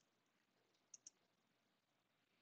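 Near silence, broken about a second in by two faint, quick clicks a tenth of a second apart from the computer as the slideshow is closed.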